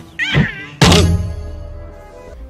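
Film soundtrack from a slapstick comedy scene: background music under a short, high, wavering cry, then a loud thud just under a second in that dies away slowly.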